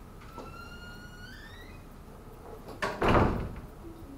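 A drawn-out squeak that rises in pitch over about a second and a half, then a click and a loud thud near the end.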